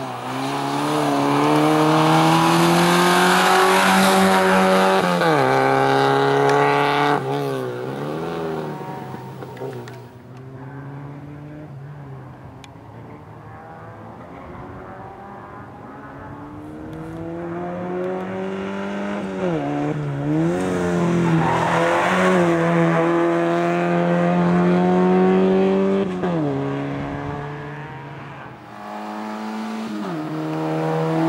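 Small hatchback slalom race car's engine at high revs, its pitch held then dropping and flicking up and down as the throttle is lifted and blipped through the cone gates. It turns quieter about ten seconds in, rises again as the car comes closer, and falls away near the end.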